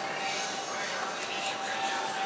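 Indistinct background voices over a steady hum and room noise.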